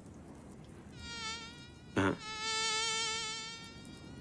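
Mosquito whine in flight, a thin high-pitched buzz that wavers slightly in pitch. It comes in two passes, a short one about a second in and a longer one after a brief sharp sound about two seconds in.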